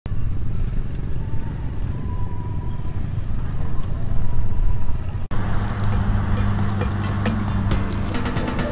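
Several motorbikes running as they ride past in a line, a low engine rumble. About five seconds in the sound cuts abruptly to a steady low hum with a run of sharp ticks that come faster and faster.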